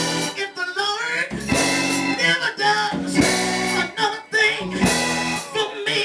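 A preacher's voice singing into a microphone over live church band music with guitar, amplified through the sanctuary's sound system.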